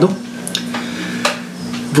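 A steady low hum with a few soft clicks, about three, in the first half of the pause.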